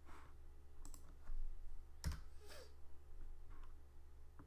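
A few scattered clicks from working a computer at a trading desk, the loudest about two seconds in, over a low steady hum.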